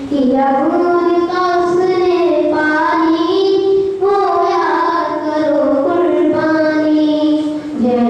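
A boy singing solo into a handheld microphone, with long held notes that step up and down in pitch.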